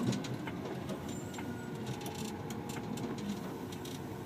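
Steady in-cab running noise of an International TranStar tractor under way, its Cummins Westport ISL G natural-gas engine rumbling low, with a few light clicks and rattles.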